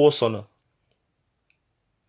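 A man's voice exclaiming "wow", ending about half a second in, then near silence.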